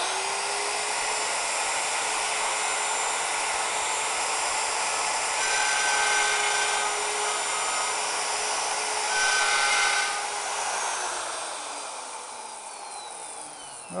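Router running at full speed, cutting box-joint fingers in the end of a board on a jig, with two louder spells of cutting, one about halfway and another a few seconds later. Near the end it is switched off and winds down, its pitch falling.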